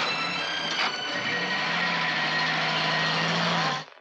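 Jeep engine running as the vehicle drives off, a steady noisy engine sound with a low hum, cutting off abruptly just before the end.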